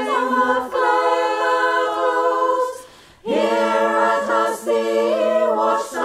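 Unaccompanied choir singing sustained chords in harmony. About halfway through the voices stop together for a brief pause, then come back in together.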